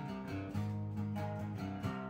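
An acoustic guitar is played with picked and strummed notes changing about every half second, over deep held notes from a bass guitar. It is an instrumental passage with no singing.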